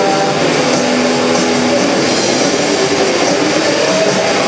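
Live shoegaze band playing a loud wall of distorted guitar noise. A few held notes in the first second and a half thin out into a dense, even wash of distortion.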